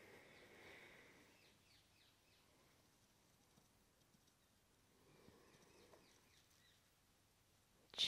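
Near silence: quiet room tone, with faint soft sounds in the first second or so and again about five seconds in.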